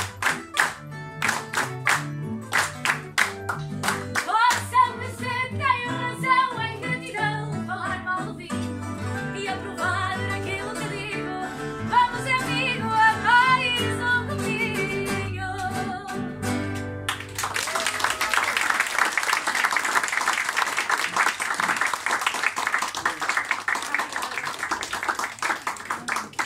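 A fado song ends, sung over the plucked notes of a Portuguese guitar and a classical guitar. About two thirds of the way in the music stops suddenly and the room breaks into applause.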